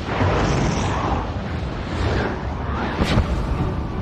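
Loud rushing, rumbling film sound effect under the music score, with a sharp crack about three seconds in.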